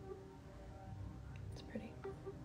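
A woman's faint whispered voice, barely audible over low steady background tones.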